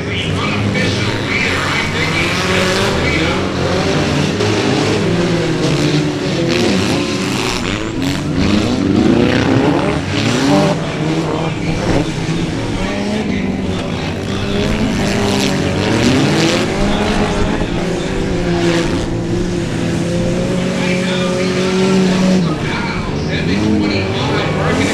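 Several racing cars' engines running and revving together, their pitch rising and falling with the throttle. One engine holds a steady pitch for several seconds in the second half.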